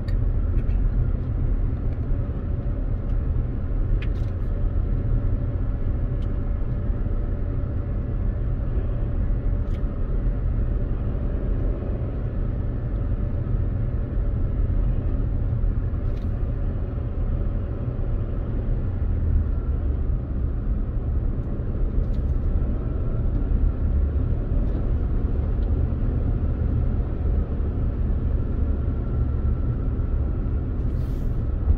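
Steady low rumble of engine and tyre noise inside the cabin of a Toyota RAV4 cruising along a highway.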